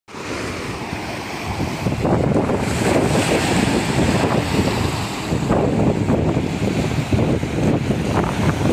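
Small waves washing up the sand and over rocks at the shoreline, with wind buffeting the microphone. It grows louder about two seconds in.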